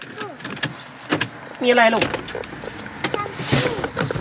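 A car door being opened, heard from inside the cabin, with a short rush of air about three and a half seconds in.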